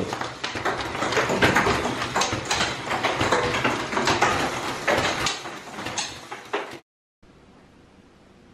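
Motorized Lego Technic catapult running in rapid fire: plastic gears, rack and pinion and the throwing arm clattering and snapping as it winds back and releases, launching plastic baby food caps about once a second. The clatter cuts off suddenly near the end.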